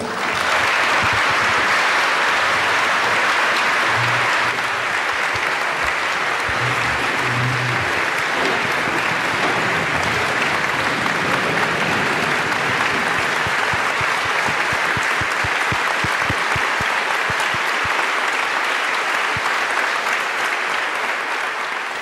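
Audience applauding in one long, steady round that eases slightly a few seconds in and tapers off near the end.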